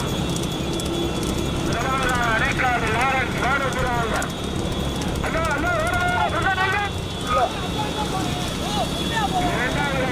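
A voice calling out in long, wavering shouts over the steady rumble of a motor vehicle's engine and road noise, with the clatter of trotting horses pulling racing sulkies.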